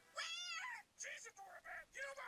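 A cartoon bat character's high-pitched squeaky voice: one call that rises and falls over about half a second, then a few shorter squeaky vocal sounds.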